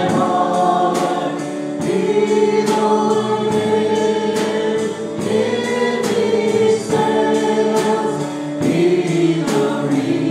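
A small praise team of men's and women's voices singing a worship song together in harmony, with long held notes, over a steady beat of sharp ticks.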